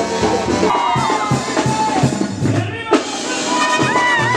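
A Oaxacan brass band (banda) plays with trumpets, trombones and drums. About three seconds in the music breaks off sharply and a different passage of the same band comes in.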